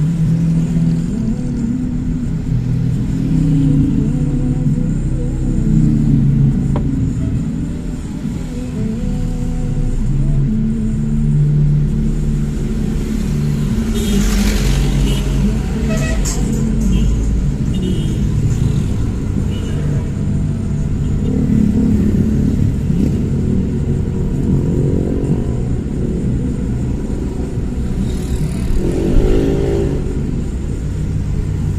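A car driving in city traffic: steady low engine and road rumble that shifts in pitch as it speeds up and slows, with a brief burst of sharper noise about halfway through.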